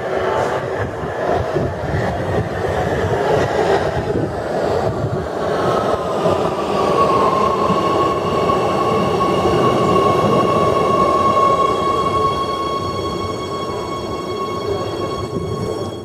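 Oslo Metro MX3000 train pulling into the station and slowing: a rumble of wheels on rails, with a high whine that dips a little in pitch and then holds steady, joined by several higher steady tones as the train slows. The sound cuts off suddenly at the end.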